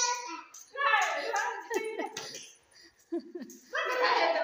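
Young children's voices calling out and crying out excitedly in several short bursts, with no clear words.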